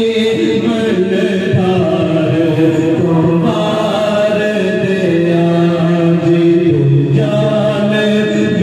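Sufi devotional chanting: voices holding long notes that step up and down in pitch.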